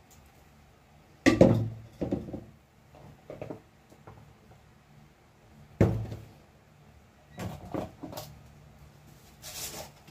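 Kitchen clatter of pots and utensils being handled: a handful of separate knocks and clunks, the loudest about a second in and just before six seconds, with a short hiss near the end.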